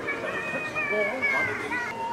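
High children's voices with music underneath.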